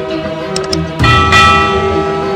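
Background music, with two quick clicks about half a second in, then a bright bell chime about a second in that rings out over the music and fades.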